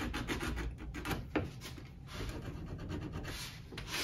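Small file rasping across the cut end of an HO-scale nickel-silver rail in quick, repeated back-and-forth strokes, squaring it off for a rail joiner connection. One sharper click about a second and a half in.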